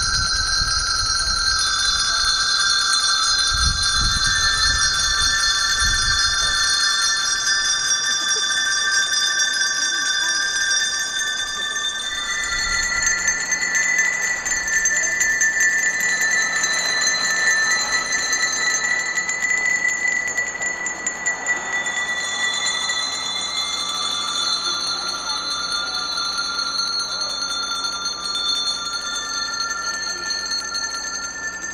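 Dozens of hand bells rung together by a crowd, a sustained, shimmering cluster of held pitches that changes to a new chord about twelve seconds in, with low rumbling under it in the first few seconds.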